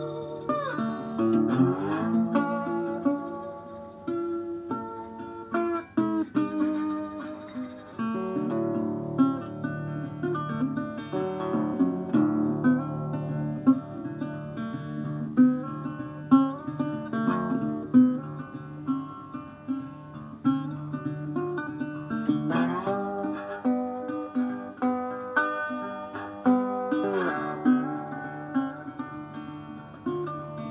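Metal-bodied resonator guitar played with a slide and fingerpicked as slide blues: a repeating bass note under a sliding melody. It swoops up into notes near the start and twice more late on.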